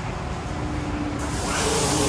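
Mark VII SoftWash XT rollover car wash running, its brushes spinning with a steady low rumble and hum. A little over a second in, a loud hiss of water spray suddenly starts up.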